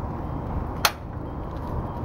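A single sharp click a little before the middle, over a steady low outdoor background noise.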